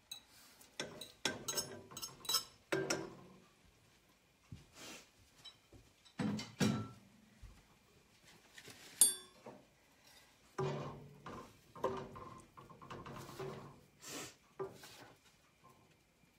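Faint kitchen handling sounds: a fork scraping broccoli out of a bowl into a pot, then scattered clinks and knocks of utensils and cookware. One sharp ringing clink comes about nine seconds in.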